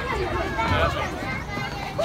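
Background chatter of children and adults at a busy playground: scattered voices without clear words.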